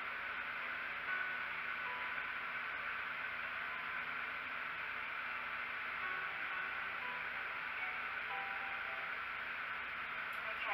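Steady hiss with a faint low hum underneath and a few faint, brief tones, with no distinct events.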